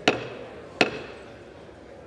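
Speaker's gavel struck twice on its wooden block, about three-quarters of a second apart, calling the House chamber to order. Each blow is followed by a short echo in the hall.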